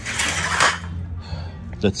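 A loose strip of sheet-metal flashing handled and put down on gravelly soil: a short scraping rattle of metal in the first second.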